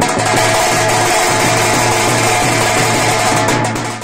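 Drums slung from shoulder straps, beaten by marching drummers in a steady, busy rhythm, with a held tone running on over the beat.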